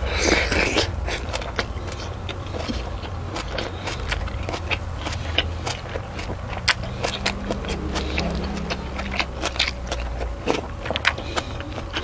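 Close-miked eating: a juicy bite into a tomato just after the start, then closed-mouth chewing with many small wet clicks and smacks. A steady low hum runs underneath.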